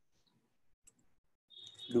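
Mostly quiet room tone with one faint, short click about a second in, from the computer as code is being typed. A man's voice starts speaking near the end.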